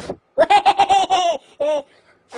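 A person laughing: a quick, high-pitched run of 'ha' sounds, then one more short laugh near the end.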